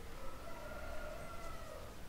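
Quiet room with a faint, held pitched tone in the background that rises slightly and falls away over nearly two seconds.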